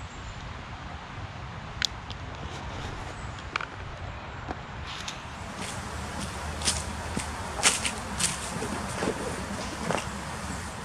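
A person moving about and handling gear outdoors: scattered light clicks and rustles over a steady background, coming more often in the second half.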